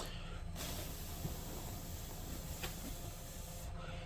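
Spray of CA kicker (cyanoacrylate glue accelerator) hissing steadily for about three seconds, starting about half a second in, to set freshly applied CA glue in a joint.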